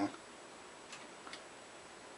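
Quiet room tone with two faint clicks about a second in, less than half a second apart.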